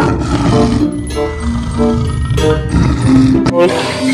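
Lion roaring, a low continuous roar that stops abruptly near the end, over background music of short repeated notes.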